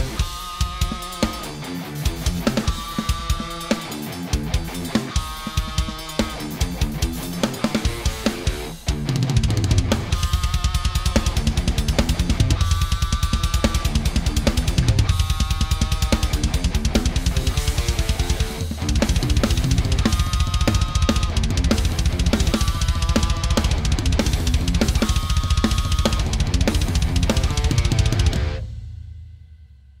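Progressive metal drumming on a Roland electronic drum kit, with kick, snare and cymbal hits, played along with a guitar track. From about nine seconds in, fast continuous bass-drum strokes run under the beat, and the music dies away just before the end.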